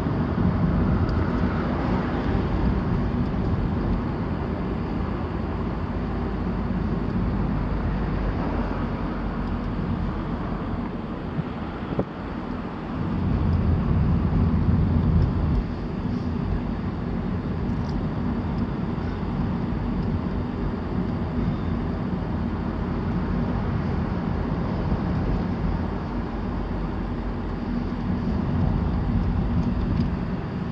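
Car driving slowly, heard from inside the cabin: a steady low rumble of engine and tyres on the road, growing louder for a few seconds about halfway through.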